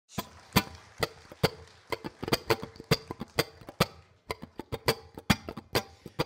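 Mandolin picked one note at a time, each note short and ringing briefly, about two a second at first, then in quicker little runs near the end.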